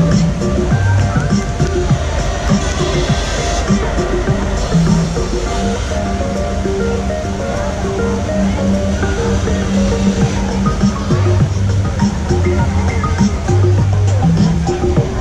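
Music with a melody of short held notes, over a steady rush of water from fountains.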